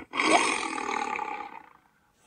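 A tiger roar sound effect played through laptop speakers: one long, rough roar that fades away near the end.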